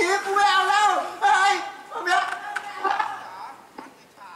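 A performer's voice through the stage microphone: speech or exclamations in short, high-pitched, wavering phrases, with a quieter stretch in the last second.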